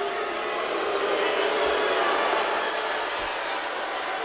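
Live arena crowd noise: many voices cheering and shouting at once, swelling a little in the middle.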